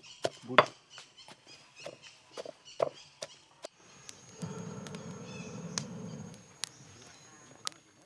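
Stone pestle pounding curry paste in a heavy stone mortar: irregular dull knocks for the first three and a half seconds. Then a quieter stretch of low steady noise with a few sharp crackles from a wood fire.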